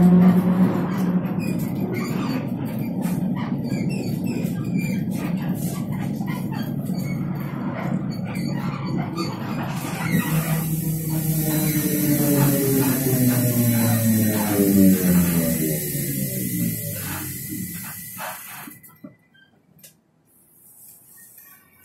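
TrolZa-62052.02 trolleybus's electric traction drive heard from inside the cabin: a steady whine while running, then from about halfway a whine of several tones falling in pitch as the trolleybus slows, with a high hiss over it, dying away near the end as it comes to a halt.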